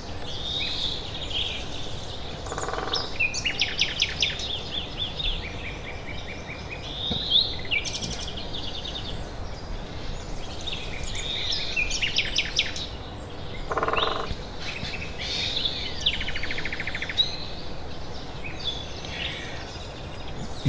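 Great spotted woodpecker drumming on a dead tree trunk: two short, rapid rolls of bill strikes, about two and a half seconds in and again about fourteen seconds in. This is territorial drumming. Songbirds chirp and trill throughout.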